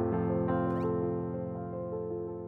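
Soft piano background music with sustained held chords. A brief high-pitched sliding sound crosses it a little before halfway.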